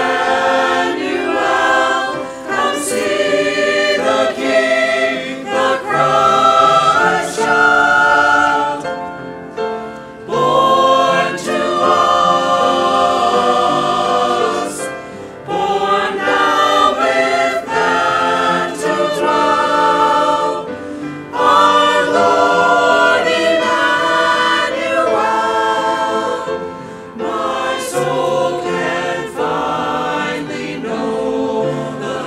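Church choir singing an anthem in phrases, with brief breaths between them.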